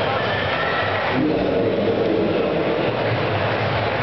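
Loud techno music filling a large hall, with crowd noise, heard as a dense, steady wash of sound. High held synth tones stand out in the first second.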